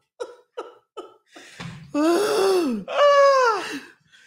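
A woman laughing hard: a run of short staccato laugh pulses, about three a second, then two long high-pitched laughing cries that each fall in pitch.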